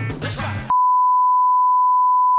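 A censor-style bleep: one steady, pure high tone that cuts in sharply under a second in and blots out all other sound. Before it, music and a voice are heard.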